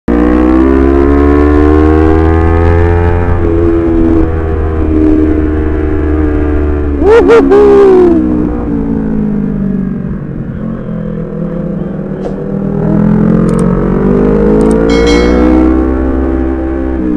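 Honda CBR250RR parallel-twin engine running under way, its pitch slowly rising and falling with the throttle through bends, over a steady low rumble of wind on the microphone. A short, loud burst of a voice cuts in about seven seconds in.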